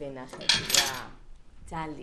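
A woman's voice on the phone, with a loud, bright sound about half a second in that lasts about half a second.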